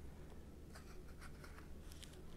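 Faint rustling of a tarot deck handled in the hands, with a few soft card ticks, over a low steady hum.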